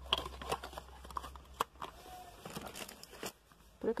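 Plastic packaging crinkling, with light clicks and knocks of plastic bottles and containers being picked up and shifted around in a box of cosmetics.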